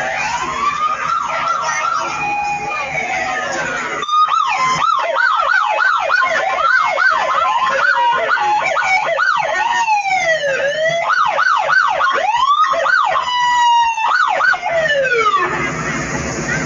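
Electronic emergency-vehicle siren, cycling between slow rising-and-falling wails and a rapid yelp of about three sweeps a second. It is fainter for the first few seconds, becomes suddenly louder about four seconds in, and glides down and fades near the end.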